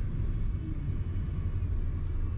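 Steady low rumble of a car's engine and tyres heard from inside the cabin while it drives slowly.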